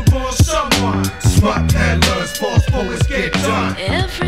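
A hip hop beat playing between vocal lines: regular drum hits over a repeating bass line, with short sliding sounds over the top.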